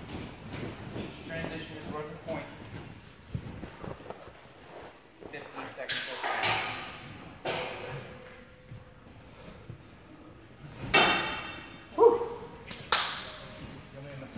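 A series of sharp knocks and clanks, the loudest three in the last few seconds, some followed by a brief ringing tone and echo in a large hall, with faint voices underneath.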